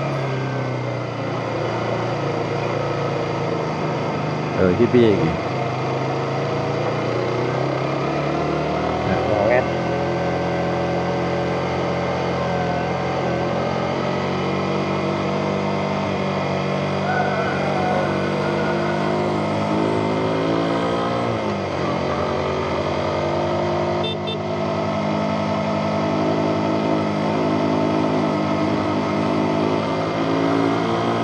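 Single-cylinder four-stroke motorcycle engine running at steady revs under way. Its pitch sags about two-thirds of the way through, then climbs again as the bike speeds up.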